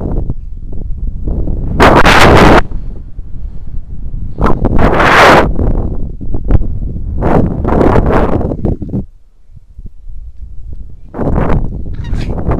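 Wind rushing over an action camera's microphone as a rope jumper swings on the rope. It comes in loud surges roughly every three seconds, one with each pass of the swing, with a low rumble between them.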